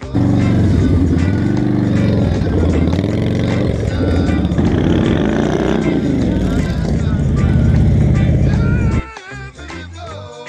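Motorcycle engines passing close on the road, loud, their pitch rising and falling as they accelerate and go by. The engine sound cuts off suddenly about nine seconds in.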